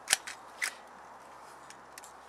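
Hand pop-rivet gun clicking as it is handled: a sharp click just after the start and another about half a second later, then a few faint ticks.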